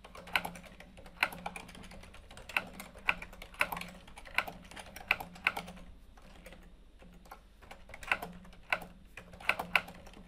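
Typing on a computer keyboard: irregular keystrokes as a sentence is typed, with a pause of about a second and a half a little past the middle before the typing picks up again.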